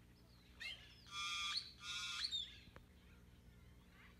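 A bird gives two harsh squawks, each about half a second long, after a brief chirp.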